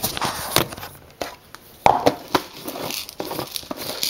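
Handling noise as a camera is set down on a kitchen counter and things are moved beside it: a run of clicks, knocks and rustling scrapes, the loudest about two seconds in.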